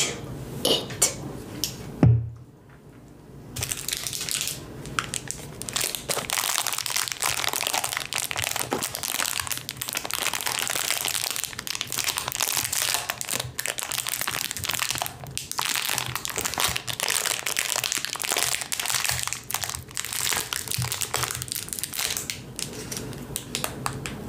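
Clear plastic cellophane bag around a candy apple crinkling continuously as it is handled and turned close to the microphone. There is a single thump about two seconds in, and the crinkling starts a second or so later.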